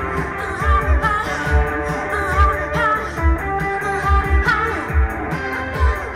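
Live band playing a song over a club PA: electric guitar, a steady kick-drum beat and a singer's voice.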